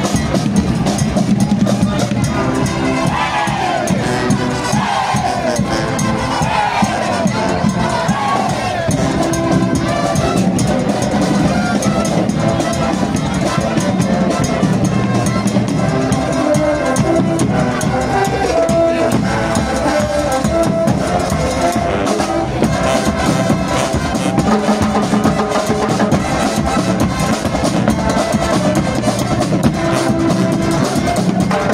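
Marching band playing: brass over drums, with a bass drum keeping the beat.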